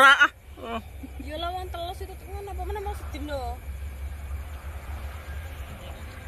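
A steady low rumble with a few spoken words over it; a voice is loudest right at the start.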